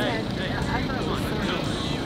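People's voices talking over a steady low rumble.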